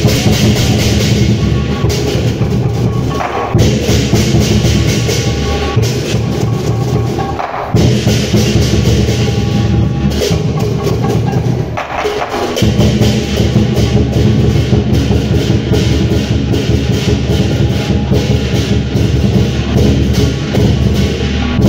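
Dragon dance percussion ensemble playing: a big drum beaten in fast, continuous strokes under clashing cymbals, with a few short breaks in the rhythm.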